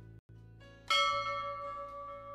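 A single bell-like chime struck about a second in, ringing on and slowly fading, over soft background music.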